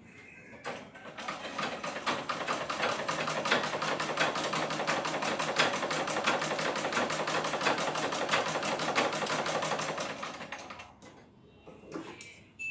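Black domestic sewing machine running, a rapid even clatter of stitches as it sews a seam along the side of a cloth mask. It speeds up about a second in, runs steadily, and winds down about ten seconds in.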